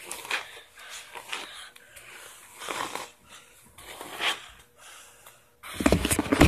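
A hairbrush drawn through long hair close to the microphone: repeated soft swishing strokes, roughly one a second, unevenly spaced. Near the end a louder rumble of handling noise comes as a hand closes in on the device.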